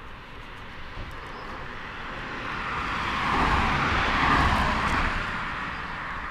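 Motorized bicycle's KTM 50 SX two-stroke engine running at speed, swelling to its loudest about four seconds in and then fading.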